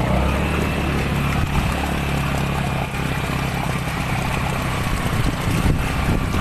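Motorcycle-with-sidecar engine running steadily as it wades through floodwater, with water churning and splashing around the sidecar.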